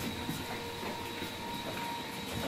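Low, steady background noise of the footage's own location sound, with a faint steady high-pitched whine running through it.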